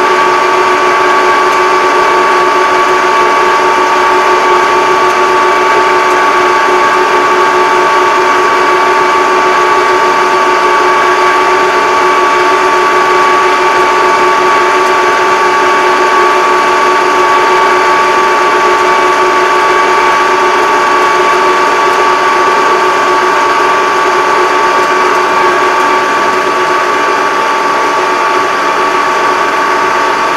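Yanmar YT333 diesel tractor driving at a steady road speed: loud, even engine and drivetrain running with a steady high whine, easing off slightly near the end.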